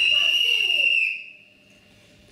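A whistle blown in one long, steady, high note that cuts off a little after a second in, with voices underneath it.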